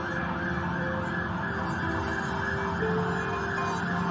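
Ambulance siren sounding a fast rising-and-falling yelp, about three sweeps a second, with a steady low hum beneath it.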